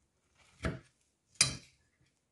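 A metal spoon cutting through pavlova and striking the plate twice, the second knock sharper and louder.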